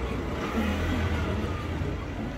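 A car engine idling nearby, a steady low hum.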